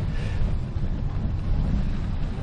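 Wind buffeting the microphone as a rider cycles along a gravel path, a fluttering low rumble with a hiss of tyre noise above it.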